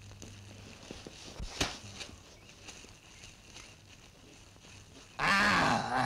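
A few light knocks and one sharp thud about a second and a half in, then a loud, pitched bear-like roar starting about five seconds in.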